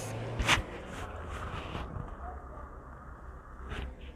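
Faint handling of cloth and a tape measure on a table, with one sharp click about half a second in and a softer one near the end, over a low steady hum.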